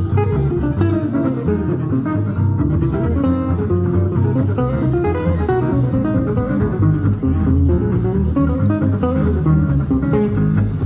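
Live jazz manouche (gypsy jazz) played by a trio: two acoustic guitars and a double bass. A single-note melodic line moves over guitar chords and a steady bass pulse.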